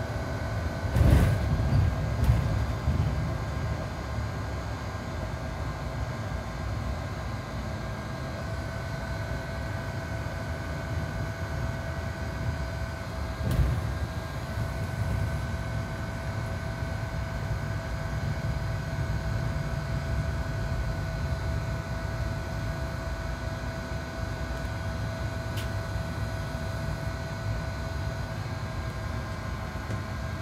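Cabin sound of a Mercedes-Benz Citaro C2 G articulated bus under way: a steady low rumble of drivetrain and road, with a faint steady high hum over it. A loud knock about a second in and another near the middle, like the body jolting over bumps.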